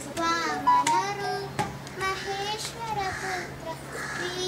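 A girl singing, her voice gliding between held notes.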